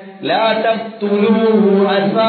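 A man's voice chanting in a melodic recitation style, with long held notes, a brief pause just after the start and another about a second in.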